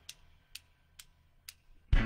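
Four sharp, evenly spaced clicks, about two a second, counting in the worship band, which comes in loudly with guitar and drums right at the end.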